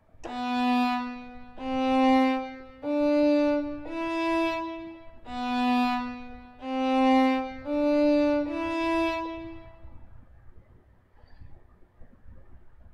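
Sampled solo violin from the Native Instruments Cremona Quartet Guarneri Violin library playing its détaché (detached bow) articulation: eight separately bowed notes of about a second each, forming a rising four-note phrase played twice. The notes stop about ten seconds in.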